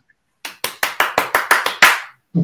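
Hands clapping: a quick, even run of about a dozen claps, starting about half a second in.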